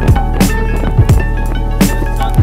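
Background music: a beat with deep kick drums that drop in pitch, a steady bass and sharp snare hits.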